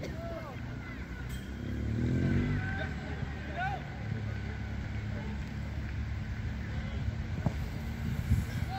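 Distant shouts and calls of youth football players across the pitch, over a low, fluctuating rumble of wind on the phone's microphone.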